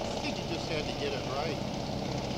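Hovercraft heard from a distance, a steady drone of its engine and lift fan as it travels under way across the water, with faint voices nearby.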